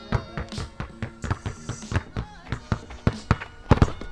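Background music with held tones, over basketballs bouncing on a hard court in quick, uneven succession as two balls are dribbled at once.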